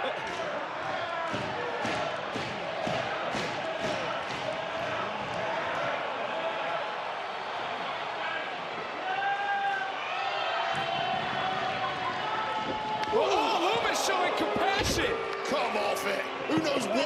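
Wrestling-arena crowd shouting and calling out throughout. Near the end come a run of sharp thuds of bodies on the ring and louder yelling.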